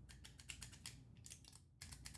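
Faint run of small, irregular clicks and taps from 3D-printed plastic parts of a flare gun replica being turned and fitted together by hand.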